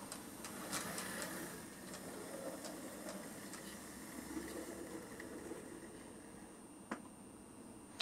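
Faint running noise of a Hornby OO gauge Princess Coronation model steam locomotive moving along the track, with a few light clicks and one sharper click about seven seconds in.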